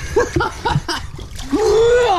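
Water splashing around a man swimming, with short bursts of his laughter in the first second. Near the end comes one long drawn-out vocal sound that rises and then falls.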